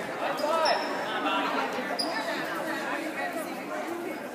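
Sneakers squeaking on a hardwood gym floor, a few short high squeaks in the first second and another about two seconds in, over voices and shouts from players and spectators echoing in the gym.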